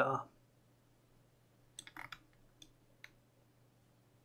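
Computer mouse clicking: about five short, sharp clicks in a quick cluster around the middle, over a faint steady hum.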